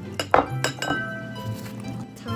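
A spatula clinking several times in quick succession against a glass container while scooping food into a stainless steel mixing bowl.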